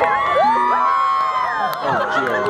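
Crowd of spectators cheering and screaming: many high voices held together for nearly two seconds, fading near the end.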